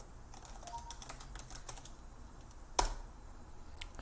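Computer keyboard typing: a run of light key clicks as a command is typed, with one louder keystroke about three seconds in.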